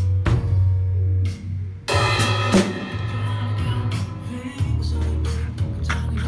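Acoustic drum kit played along to a recorded song with a steady bass line: snare, bass drum and cymbal hits, with a loud cymbal crash about two seconds in after a short drop in the music.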